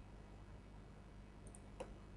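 Near silence with a faint low hum, and two or three faint clicks near the end from a computer keyboard in use.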